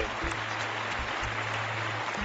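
Studio audience applauding steadily, with a low sustained musical tone underneath.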